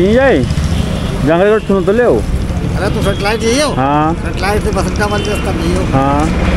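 A man talking over the steady low rumble of road traffic, with motorcycles going by.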